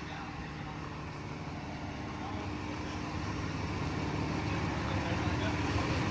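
Large 36,000-pound forklift's engine idling: a steady low hum that grows gradually louder.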